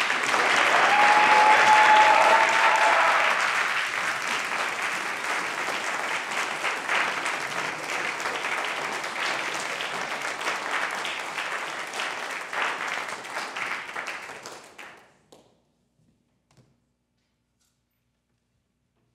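Audience applauding, loudest in the first few seconds, then tapering off and stopping about fifteen seconds in.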